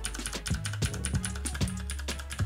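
A rapid run of clicky keystrokes on a mechanical keyboard with blue switches, each press giving a sharp click, with background music underneath.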